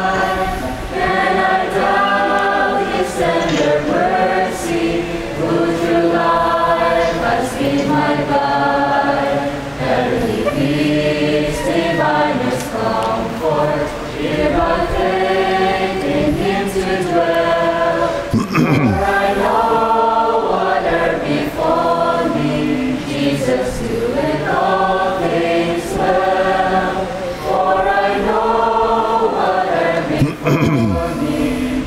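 A group of voices singing a praise song together, phrase after phrase, led by young women's voices.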